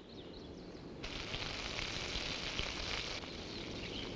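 Faint outdoor nature ambience: a soft high hiss that comes in about a second in and drops away near three seconds, with a few faint bird chirps.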